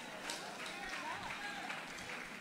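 A pause in the amplified speech: faint room tone of a large hall, with faint, indistinct voices in the background.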